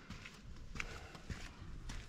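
Footsteps crunching on a dry dirt and gravel trail at walking pace, four steps about half a second apart.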